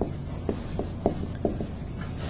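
Quiet pause between words: a steady low hum with a few faint, soft ticks scattered through it.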